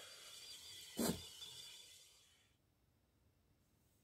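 Faint steady hiss from a kettle sitting on a hot wood-stove top, with one short spoken word about a second in; the sound cuts off to silence a little after two seconds in.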